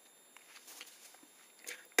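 Quiet room tone with a few faint, short clicks and a soft brief sound near the end.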